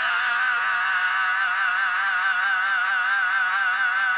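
A heavy metal singer holds one long, high note with a wide, even vibrato, with no band behind it.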